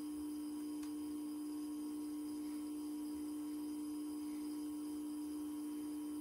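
Steady electrical hum, one pitch held without change, from the charger (a bench power supply) while it pushes charge current into the LiFePO4 battery during a low-temperature cutoff test.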